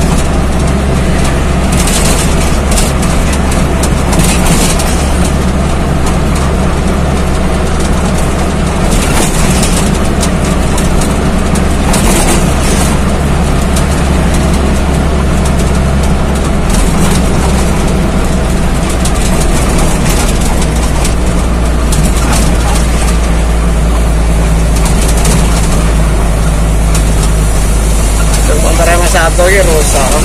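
Truck engine running steadily at highway speed, heard loud from inside the cab together with road and wind noise.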